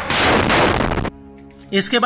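Loud blast of a rocket being fired: a rush of noise that fades and cuts off about a second in, leaving a faint music bed, with a man's voice starting at the very end.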